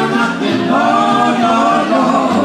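Live acoustic swing band playing with an upright bass, and voices singing a sustained line over it from about half a second in.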